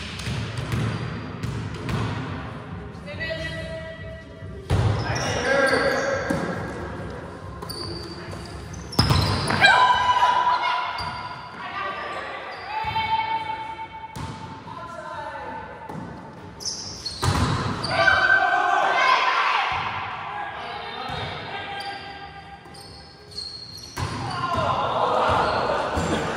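Volleyball rally sounds in an echoing gym: a handful of sharp ball contacts, hits off hands, arms and the floor, with players calling out between them.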